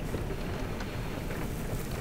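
Steady, soft rain ambience with an even hiss and no distinct drops or strikes.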